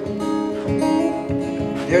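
Acoustic guitar strummed in a steady rhythm between sung lines, a man's singing voice coming back in at the very end.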